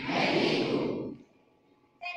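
A close, breathy rush of noise on the microphone, lasting about a second and then dying away.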